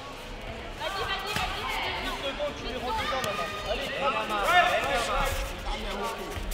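Several voices shouting over one another, coaches and spectators calling to kickboxers during a bout, with a few dull thuds from the mat. The shouting picks up about a second in.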